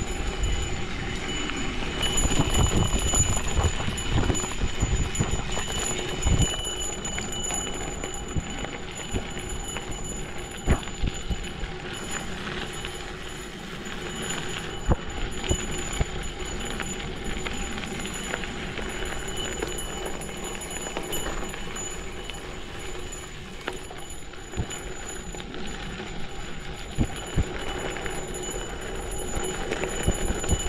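Cervélo Áspero gravel bike on Panaracer GravelKing X1 40 mm tyres rolling over a gravel forest road: a steady crunching rush of tyre noise with frequent irregular knocks and rattles as the bike hits bumps and stones.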